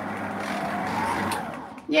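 A budget electric stand mixer running, its wire whisk beating bicarbonate soda powder in a stainless steel bowl, with a steady motor noise that fades out near the end.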